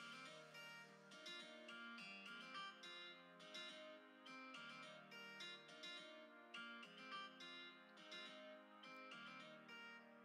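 Quiet background music played on plucked guitar, notes picked in a steady rhythm.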